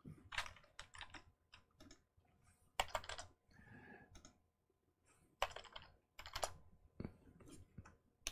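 Computer keyboard keys pressed in short, irregular clusters of faint clicks with pauses between: keystrokes that re-indent and break lines of code.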